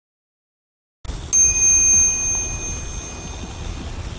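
A bicycle bell struck once a little over a second in, ringing on with a clear high tone that fades over about two and a half seconds, over a low background rumble.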